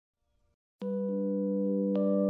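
Brief silence, then an electronic keyboard begins a soft, sustained intro chord, with more held notes joining within the first second.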